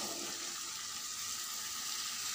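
Oil-rich masala sizzling steadily in a steel kadai as boiled chickpeas are tipped in from a steel bowl.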